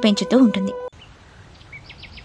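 A soft outdoor ambience bed, a steady hiss with a few faint bird chirps, begins about a second in after a spoken line cuts off.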